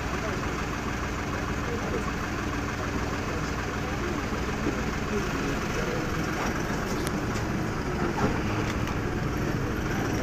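Safari vehicle's engine idling steadily, a low even hum.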